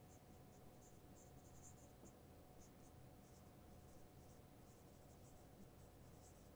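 Faint squeaks and scratches of a felt-tip marker writing on a whiteboard, in many short, irregular strokes.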